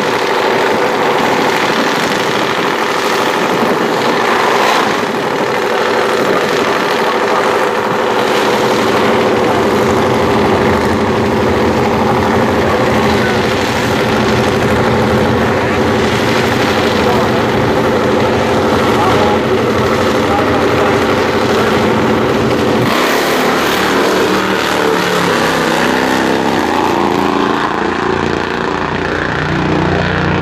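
Top Fuel Harley-Davidson V-twin drag bikes running loud and steady at the starting line, with a few short throttle blips. About 23 seconds in the engine sound changes abruptly and rises in steps as a bike launches and pulls away down the track.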